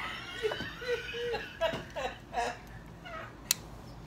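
High-pitched giggling and short voiced squeals from a person, with a single sharp click about three and a half seconds in.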